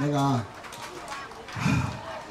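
A man's voice through a handheld microphone and PA: a brief drawn-out vocal sound falling in pitch at the start, then a short low thump about a second and a half in.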